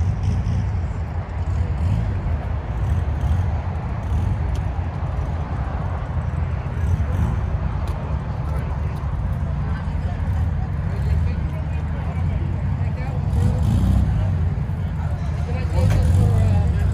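A steady low rumble throughout, with indistinct voices in the background.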